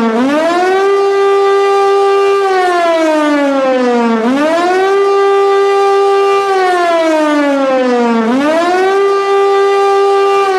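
Hörmann HLS F71 compressed-air high-performance siren, built 1971, sounding the 'Warnung der Bevölkerung' civil-defence warning: a loud wail that rises quickly, holds its pitch for about two seconds, then falls slowly. The rise comes three times, roughly every four seconds.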